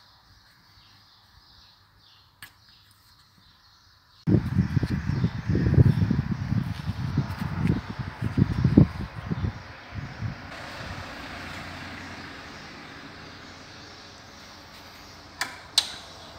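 Loud, irregular low rumbling from rubbing and knocking against the microphone. It starts suddenly about four seconds in and eases into a steady hiss after about six seconds, with a short sharp click near the end.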